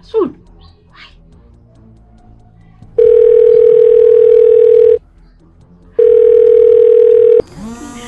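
Telephone ringback tone: two long steady beeps about two seconds each with a second's gap, the second cut short. A brief falling swoop comes just after the start, and a woman's crying begins near the end.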